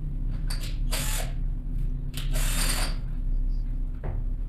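Short scraping and rattling sounds from a screwdriver and wires being worked at a contactor's terminals, the longest between two and three seconds in, over a steady low hum.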